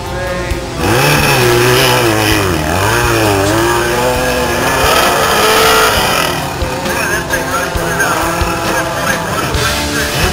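A hillclimb dirt bike's engine revving hard, its pitch climbing and dropping several times from about a second in until it fades a little past the middle, over rock music.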